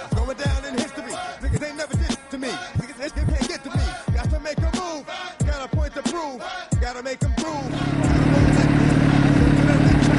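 Hip hop music with rapping over a heavy beat. About three quarters of the way in, it gives way to a Suzuki GSX-R 750's inline-four engine idling steadily.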